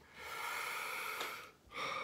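A man's long breathy exhale lasting about a second, followed by a short, softer intake of breath near the end.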